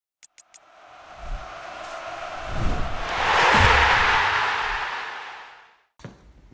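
Intro sound effect: three quick clicks, then a rushing whoosh that swells to a peak about halfway through and fades away, with a few low thuds beneath it.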